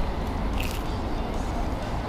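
A person biting into and chewing a slice of pizza, with one brief sharp sound about two-thirds of a second in, over a steady low street rumble.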